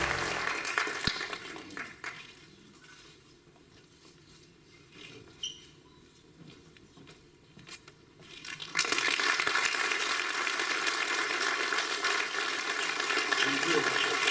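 Audience applause dying away in the first two seconds, a few seconds of near quiet with small rustles, then steady applause again from about nine seconds in.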